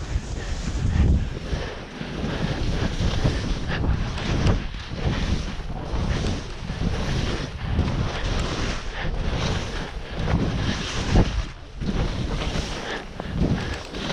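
Wind rushing over a skier's camera microphone while skiing downhill, mixed with the hiss and scrape of skis on snow. The noise swells and eases every second or so with the turns.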